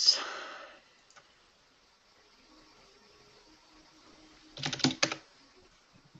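Computer keyboard being typed on: a quick burst of four or five keystrokes a little before the end, after a single faint click about a second in.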